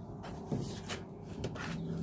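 A few faint knocks and handling sounds over a quiet, low room hum.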